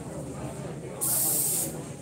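An aerosol party spray can sprayed in one short hiss of under a second, starting about a second in, over a low murmur of crowd chatter.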